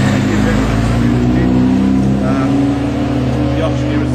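A motor engine running steadily, a low drone whose pitch wavers slightly and which drowns out a man's speaking voice.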